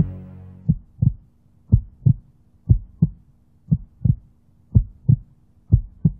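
Heartbeat sound effect: paired low thumps, lub-dub, about one pair a second, over a faint steady hum. The end of a piece of music fades out under the first beat.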